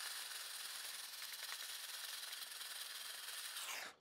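A stacked 3D-printed plastic LEGO sorter being shaken to sift bricks, with the trays rubbing and scraping against each other and the LEGO pieces shifting inside as a steady hiss. The sound cuts off suddenly just before the end.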